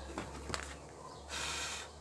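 Brief soft rustle of an EVA foam sheet being handled and picked up, with a faint click a little before it.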